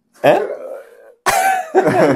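A man's short spoken 'hein', then, about a second and a quarter in, a sudden loud burst of men's laughter.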